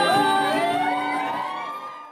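Audience whooping and cheering, many high voices sliding up and down over the last of the music. The sound fades away toward the end.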